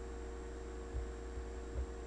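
Steady low electrical hum with faint hiss, the kind picked up by a recording microphone setup, with two faint soft knocks about one second and nearly two seconds in.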